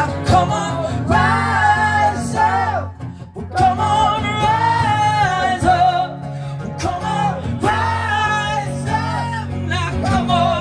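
Live singing with an acoustic guitar: long held, wavering sung notes in three phrases, with a short break about three seconds in.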